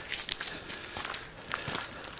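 Footsteps crunching on a gravel forest track, irregular steps at a walking pace.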